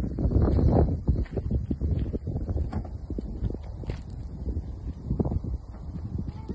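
Wind buffeting the microphone, with irregular crunching steps on roadside gravel and grass.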